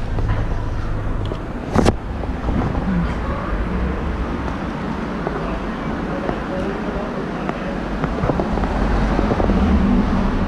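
Steady street traffic noise with a sharp knock about two seconds in.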